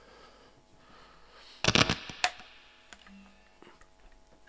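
Guitar handling noise while one guitar is set down and an electric guitar is picked up: a short clatter of knocks a little before halfway, then a single sharp click.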